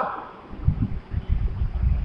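Low, uneven rumble of air buffeting the microphone, rising and falling in gusts with no voice over it.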